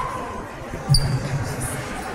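A single dull thump about a second in, over the steady background of a large hall.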